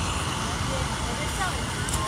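Steady street background noise from traffic, with faint distant voices.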